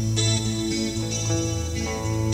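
Live ambient music led by an acoustic guitar picking notes, with a steady low tone held underneath.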